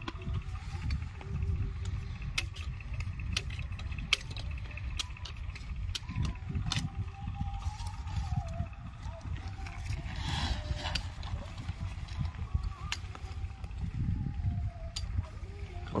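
Wind rumbling on the microphone in an open field, with scattered sharp clicks and knocks and faint distant voices.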